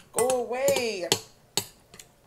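Metal spoon clinking against a glass bowl as it scoops up greens: three sharp clinks spread over the second half, with a woman's drawn-out "go" in the first half.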